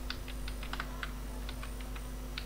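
Computer keyboard keys clicking in an irregular run of keystrokes, over a steady low hum.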